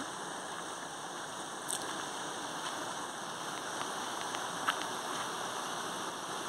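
Steady rush of running water from a small waterfall and its rock pools, with a few faint ticks.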